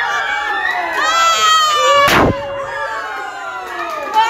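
People cheering with long, drawn-out high shouts, and a confetti popper going off with a single sharp bang about two seconds in.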